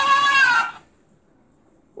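A talking baby hippo toy's electronic voice holding one long, high note through its small speaker, cutting off about three-quarters of a second in.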